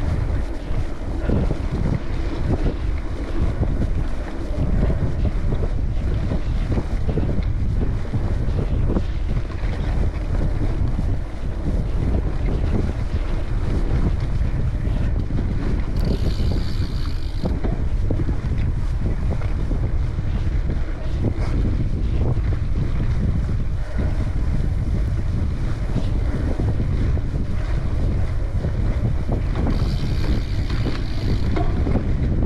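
Riding wind buffeting the camera microphone over the rumble and rattle of bike tyres rolling on a dirt forest trail. A brief higher buzz comes about halfway through.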